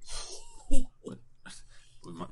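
A person's breathy, wheezy laugh into a microphone, with a loud short burst just before a second in and a couple of brief voiced bits.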